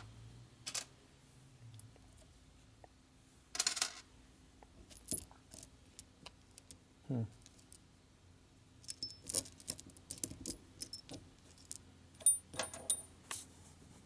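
Steel bolts and washers clinking as they are picked up, handled and set down on a metal workbench: scattered sharp clicks, with a busier run of clinks near the end.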